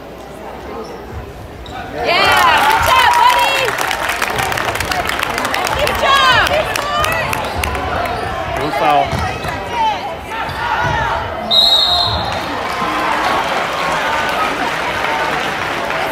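Basketball game in a gym: a basketball bouncing on the hardwood court among crowd voices, rising suddenly about two seconds in. A referee's whistle blows once, briefly, about twelve seconds in.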